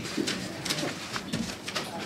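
Sheets of paper rustling as they are handled, over soft, low sounds that recur about every half second.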